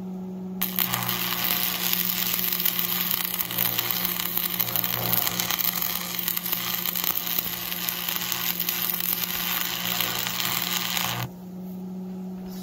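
Stick arc welding with a Lincoln AC-225 AC transformer welder: the electrode arc strikes about half a second in and crackles and sizzles steadily for about ten seconds while laying a tack weld on a steel plow mounting bracket, then breaks off suddenly near the end.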